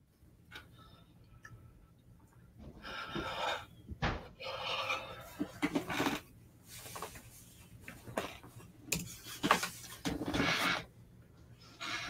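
Toys being handled and packed into a cardboard box: rustling, scraping and light knocks in several short bursts.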